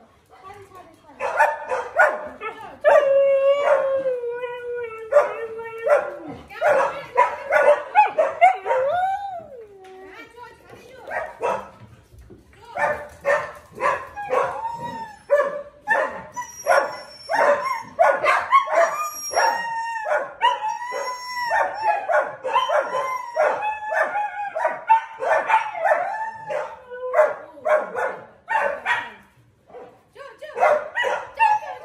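Siberian husky howling in long, wavering calls that slide up and down in pitch, mixed with short yips and barks. There is a short lull about ten seconds in, then the calls start again.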